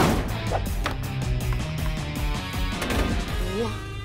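Cartoon background music over a quick run of light taps: a small cartoon creature's scampering footsteps.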